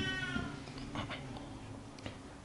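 The last held note of a Quran recitation fading away through the amplified room's echo, then a pause with a few faint breaths at the microphone.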